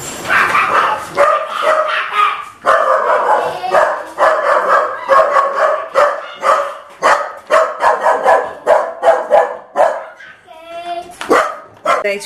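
A dog barking over and over in quick succession, with a short lull near the end.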